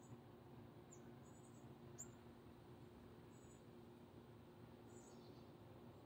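Near silence: faint outdoor background, with a few short, faint high chirps scattered through it and a faint click about two seconds in.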